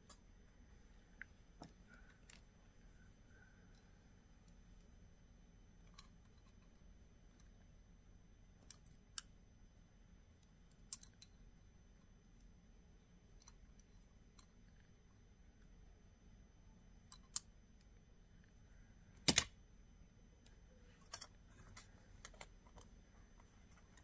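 Faint, scattered clicks and taps of a brass horse stamping and a metal hair barrette being handled and bent with pliers, with one louder clack about three-quarters of the way through.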